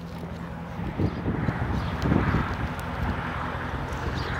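Wind buffeting the microphone, with rustling handling noise, swelling about a second in and easing off toward the end, over a low steady hum.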